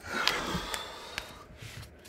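A breathy exhale and rustling while dropped tarot cards are gathered up, with three light clicks in the first second or so.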